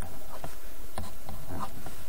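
A steady buzzing hum and hiss in the recording's background, with a few faint ticks.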